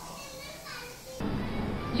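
Faint voices in the background, children's among them. About a second in, a louder bed of background music cuts in.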